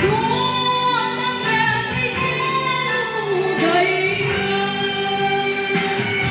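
A woman singing a song live into a handheld microphone, holding long notes; about three and a half seconds in, her note dips down in pitch and comes back up.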